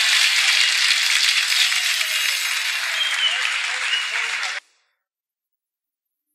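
Studio audience applauding, cut off abruptly about four and a half seconds in.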